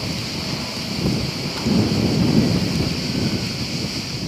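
Steady rushing hiss with a deep rumble underneath that swells about two seconds in and then eases off.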